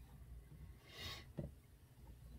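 Very quiet pause with one soft breath, a hiss through the nose or mouth, about a second in, and a faint tap just after.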